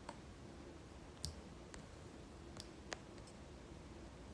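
A handful of faint, sharp clicks at irregular intervals over quiet room tone, the clearest about a second in and near the three-second mark.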